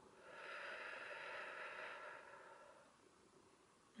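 A woman's long, slow exhale as part of a deep-breathing exercise: a soft breath out that starts just after the beginning, lasts about two and a half seconds and fades away.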